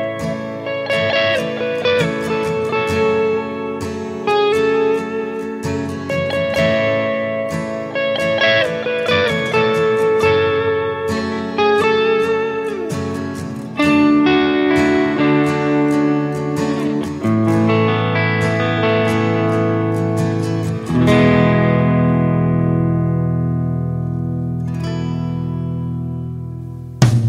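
Instrumental intro of a song, led by a guitar playing a melody of plucked notes with a few bent notes. Deeper held notes join about halfway through, and near the end it settles on a held chord that slowly fades.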